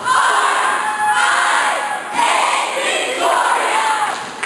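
A cheerleading squad shouting a chanted cheer in unison, in four loud phrases about a second apart.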